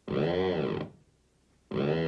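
Electronic tones from a theremin-like instrument: two swooping notes, each rising and then falling in pitch over under a second, with a short silence between them.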